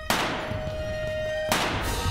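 A sudden loud rifle shot on stage with a long ringing decay, while the orchestra holds a single high note; a second loud burst of noise follows about a second and a half later.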